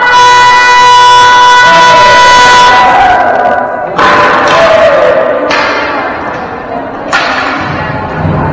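A game horn sounds one long, loud, steady blast for about three seconds. Then come three sharp, loud bangs about a second and a half apart, each ringing on in the echoing gym.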